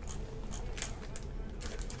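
Several faint, sharp clicks of a computer mouse being clicked and scrolled, spread irregularly through the two seconds.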